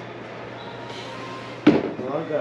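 A sneaker set down on a cardboard shoebox: a single sharp knock about one and a half seconds in, over a steady low hum.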